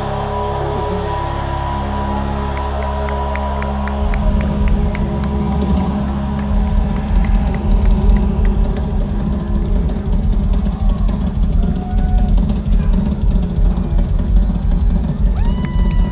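Live heavy rock band playing at full volume: a held chord for the first few seconds, then fast, dense drumming with heavy kick drum comes in about four seconds in, under sustained guitar.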